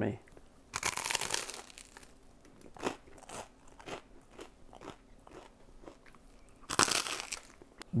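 A bite into crisp toast topped with roasted bone marrow and parsley salad: a loud crunch about a second in, then mouth-closed chewing with small scattered crunches, and another short crunchy burst near the end.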